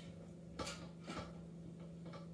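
Wrench tightening a toilet water-supply T-valve fitting: two faint metallic clicks about half a second apart, over a steady low hum.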